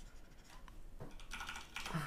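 Faint scratch of a pen stylus stroking across a graphics tablet, with a couple of light clicks.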